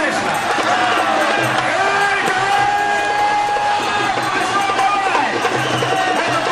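Muay Thai fight music with a long, gliding melody line, playing over voices and shouting from the crowd.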